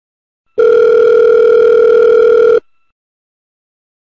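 Telephone ringback tone of an outgoing call that has not yet been answered: one steady ring lasting about two seconds, starting about half a second in.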